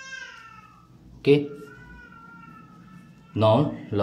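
A cat meowing in the background, fainter than the voice: one rise-and-fall meow at the start, then a longer, steadier, fainter call through the middle.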